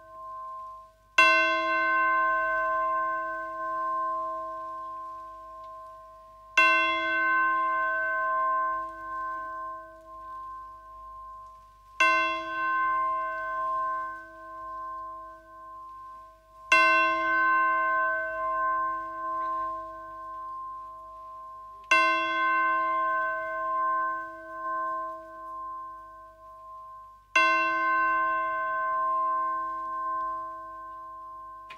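Tubular bells struck on one repeated note, six slow strokes about five seconds apart, each ringing on until the next like a tolling bell.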